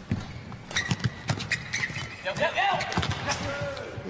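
Badminton doubles rally: sharp racket hits on the shuttlecock, shoes squeaking and feet thudding on the court, and a player tumbling to the floor.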